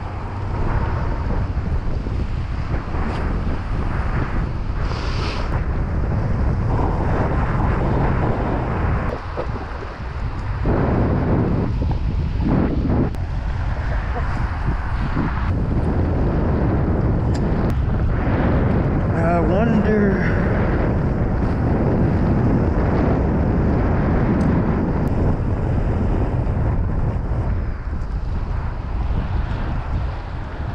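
Strong wind buffeting an action camera's microphone, a steady low rumble, over water churning where the spillway current meets the bay.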